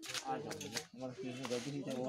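Quiet talking from a person in the background, with a few light clicks and rustles.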